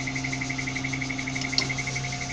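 Tadano crane cab alarm buzzer sounding a high tone in a rapid, even pulse, over a low steady hum. It is the warning tied to the hoist cable.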